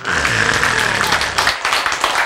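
A room of people clapping and laughing together, a dense spatter of many hands with voices laughing under it.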